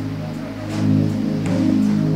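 Music: soft keyboard chords held under a pause in the preaching, swelling slightly about a second in.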